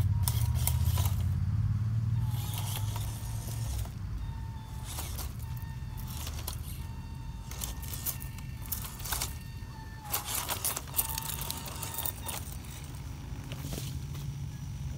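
WPL C24 RC crawler truck's small brushed electric motor and gearbox whining in short, stop-start throttle bursts, the pitch shifting as it crawls over loose rocks. Its tyres click and clatter on the stones throughout.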